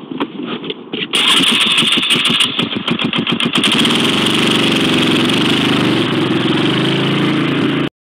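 An engine starting: quick even pulses from about a second in speed up and settle into a steady running sound from about four seconds in. The sound cuts off abruptly just before the end.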